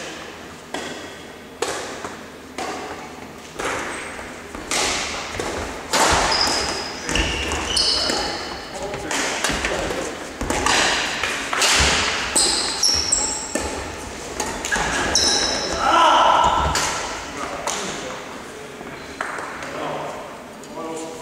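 Badminton rackets striking a shuttlecock in a doubles rally: a string of sharp hits about a second apart, ringing in a large sports hall. Short high squeaks of sports shoes on the wooden floor come between the hits, with voices now and then.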